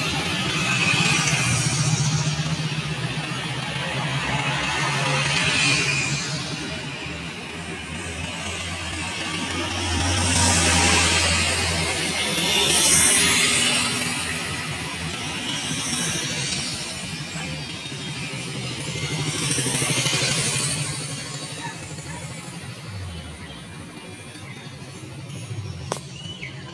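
Road traffic with cars and motorcycles passing one after another, each rising and fading, under background music.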